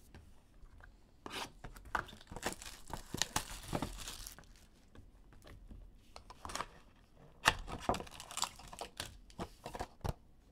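A Bowman Chrome card box being torn open by hand: irregular tearing and crinkling of its wrapping and cardboard, coming in bursts, the sharpest at about seven and a half seconds.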